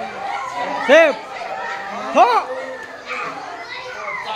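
Children playing in a group: running chatter and calling, with two loud shouts that rise and fall in pitch, about a second in and again just after two seconds.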